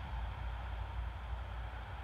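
Ford 460 big-block V8 in a 1940 Dodge truck idling with a steady low rumble, running on freshly fitted headers that have not yet burnt in.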